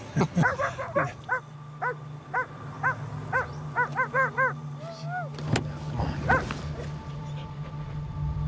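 A dog barking in a series of short barks, about two a second, coming faster for a moment around the middle, then a short whine.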